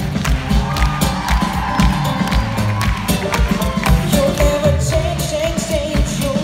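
Live pop-soul band playing to a steady drum beat, with cello, bass and acoustic guitars. A female lead voice comes in singing about four seconds in, over audience cheering.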